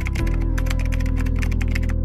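Rapid computer-keyboard typing clicks, about ten a second, laid over background music with sustained low notes; the clicks stop near the end.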